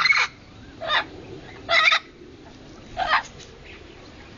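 Amazon parrot squawking: four short, loud calls, roughly one a second.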